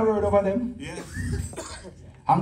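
A voice holding a drawn-out word that fades out under a second in, followed by a cough.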